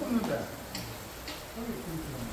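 People chatting over a meal, with two light clicks of tableware, such as chopsticks on dishes or plastic containers, a little over half a second apart.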